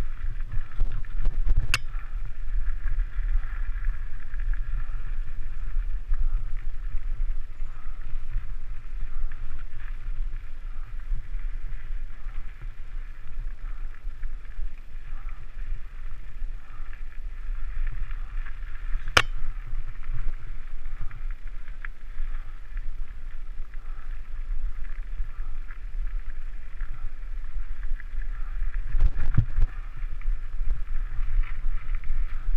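Mountain bike ridden along a rocky dirt single track, heard from the rider's own bike: a steady low rumble of tyres and frame over the trail, with two sharp knocks, one about two seconds in and one about nineteen seconds in.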